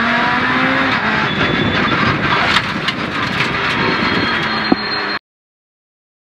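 Citroën C2 R2 Max rally car's 1.6-litre four-cylinder engine heard from inside the cabin, running under throttle and then easing off about a second in, leaving mostly road and tyre noise with scattered clicks as the car slows past the finish. The sound cuts off abruptly about five seconds in.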